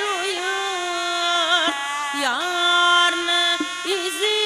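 A woman singing a Khorezmian xalfa song, holding long notes decorated with wavering trills and quick pitch dips.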